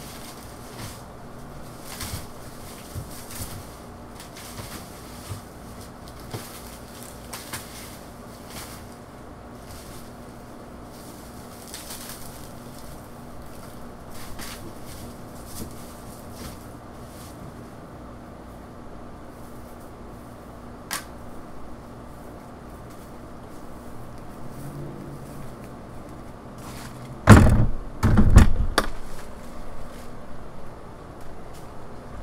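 Faint rustling and knocking of cut banana stalks and fronds being pushed into a plastic wheelie bin. Near the end comes a quick run of loud thuds and knocks.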